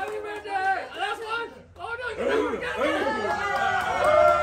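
Several people talking at once in a room: overlapping chatter from a small group of adults and children, with a brief lull about halfway through.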